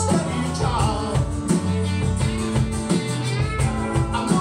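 A live rock band playing, with a man singing lead over acoustic and electric guitars, drums and keyboards.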